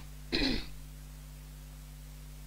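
A person clears their throat once, briefly, into a handheld microphone. A steady low electrical hum runs underneath.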